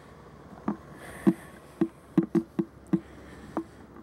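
Footsteps on gravel: a string of short, irregular crunching steps at about a walking pace, roughly two a second.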